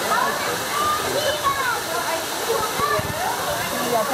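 Aviary birds calling and chirping in many short rising and falling notes over a steady rushing background noise, with people talking.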